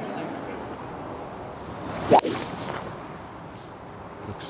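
A golf driver swung off the tee: a short swish of the club, then one sharp crack as the driver face strikes the ball, about two seconds in.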